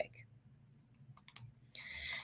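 A few quick, sharp computer clicks, as when a slide is advanced, over near silence, with a soft breath near the end.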